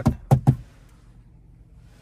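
Three quick knocks in the first half-second, a hand tapping the car's dashboard trim, then only a faint low hum.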